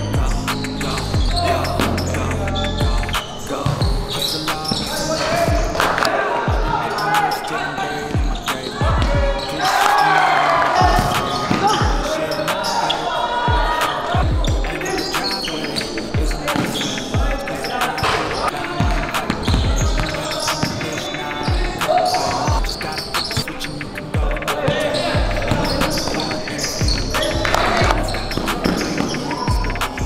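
Basketball bouncing repeatedly on a hardwood gym floor at an irregular pace during play, with voices in the echoing gym.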